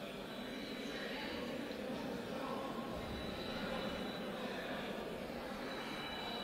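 Faint, steady background noise of a sports hall, with distant indistinct voices.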